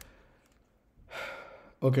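A man's audible breath about a second in, a short airy burst with no voice in it.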